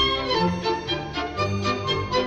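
Orchestra playing an instrumental passage of operetta music, with violins prominent.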